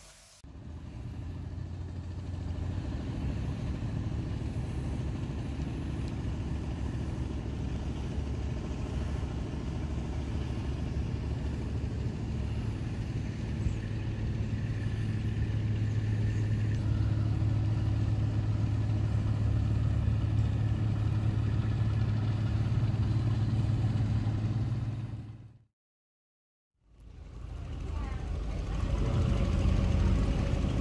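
Tour boat's engine running steadily with a low hum, heard from on board. The sound cuts to silence for about a second near the end, then resumes.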